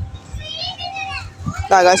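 Young voices talking in the background, then a loud drawn-out call near the end.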